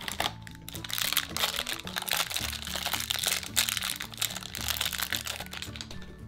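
Crinkly plastic toy wrapper being handled, a dense run of crackling over about five seconds, with steady background music underneath.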